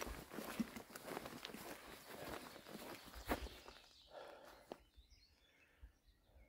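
Faint footsteps of a hiker walking on mown grass, irregular soft steps that stop about two-thirds of the way through.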